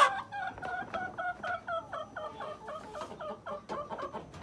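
Chickens clucking in a coop: a quick, even run of short falling calls, about five a second, fading toward the end.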